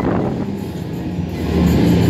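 Flipper fairground ride running, heard from a rider's seat in a moving gondola, with the ride's music playing loudly over the rumble of the machinery. The sound grows slightly louder in the second half.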